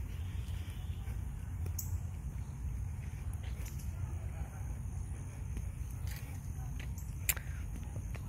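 Outdoor ambience: a steady low rumble, with a few faint clicks.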